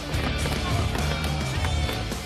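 Dramatic orchestral-style soundtrack with heavy low beats, mixed with warriors banging weapons against wooden round shields in repeated knocks.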